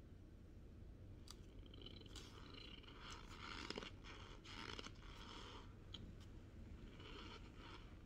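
Faint crunchy chewing of a mouthful of cornstarch, coming in several short spells, with a few soft clicks.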